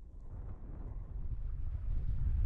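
Wind rumbling on the microphone over the rush of river water, fading in from silence and growing steadily louder.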